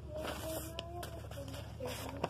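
A faint, high-pitched voice of another person speaking in the background, with a few light clicks.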